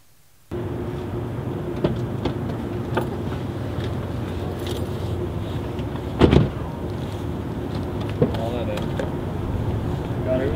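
Street traffic noise with a steady engine hum, broken by a few sharp knocks and one loud thump about six seconds in.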